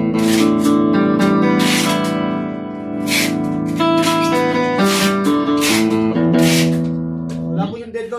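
Stratocaster-style electric guitar strumming chords, about six strokes, each chord left to ring before the next, with the chord changing between strokes; the playing stops just before the end.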